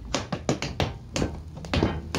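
Tap shoes striking a wooden deck in a quick, uneven run of sharp taps: the steps of a waltz clog, shuffles, ball changes and bells, with the loudest taps near the end.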